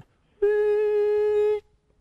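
A person humming one steady, level note for about a second, starting about half a second in, as a vocal imitation of a hydraulic lift raising.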